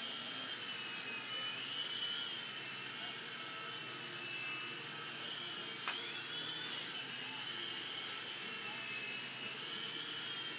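Small remote-control toy helicopter flying, its electric motor and rotors giving a steady whine whose pitch wavers slowly up and down. About six seconds in there is a sharp click, and the whine briefly jumps higher.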